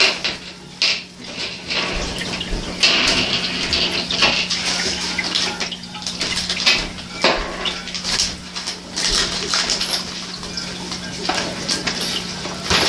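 Plastic parts bags rustling and small metal Meccano pieces clinking as they are handled and put back into the bags, in uneven bursts of rustle and clicks over a steady low hum.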